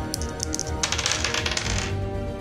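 Dice rolled onto a table: a few light clicks, then about a second of rattling and clattering starting near the middle, over soft background music.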